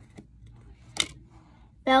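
Pokémon trading cards being shuffled from the back of a hand-held stack to the front, with one sharp card click about halfway through.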